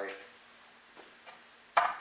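Quiet workshop room tone with a couple of faint ticks, then a single sharp clack near the end as a hand tool is picked up or set down on the workbench.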